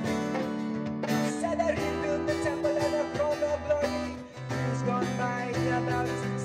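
Live acoustic band playing a reggae song: strummed acoustic guitar, keyboard and hand drum, with a man singing the melody. The music eases off briefly a little after four seconds, then picks up again.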